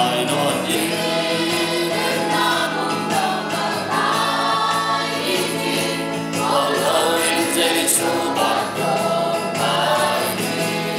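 A mixed group of men, women and children singing a Christian song together as a choir, continuously and steadily.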